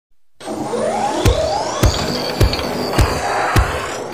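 Electronic intro music with a steady kick-drum beat, about one beat every 0.6 s, over sweeping whooshes that glide up and down in pitch. It starts almost at once.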